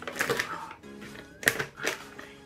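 Snack bag being torn open by hand: a crinkly rip just after the start, then two sharp crackling tears about a second and a half in, over steady background music.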